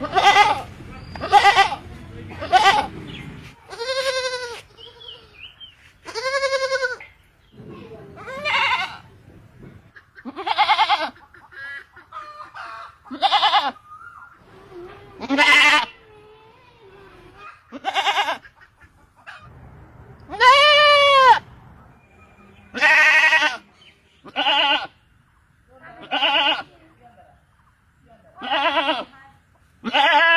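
Two goats bleating back and forth: about fifteen separate calls, each with a wavering pitch, one roughly every two seconds.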